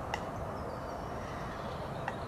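Steady outdoor background noise, a low even rumble, with one brief sharp sound just after the start.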